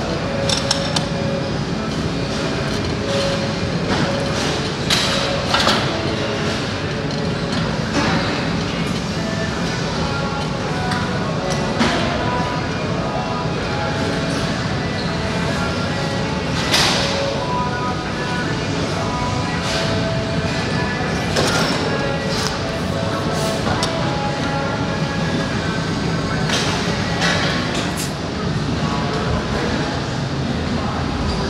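Busy gym ambience: background music and people talking, with sharp clanks of metal from weight machines and plates every few seconds, the loudest about 17 seconds in.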